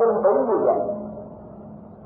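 A man's voice drawing out a syllable that bends in pitch and fades away over about the first second, followed by a faint steady hum.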